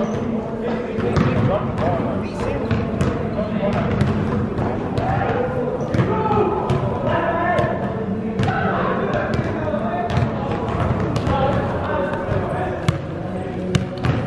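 Basketball bouncing on an indoor gym court in scattered, irregular dribbles, over indistinct voices talking in the echoing hall.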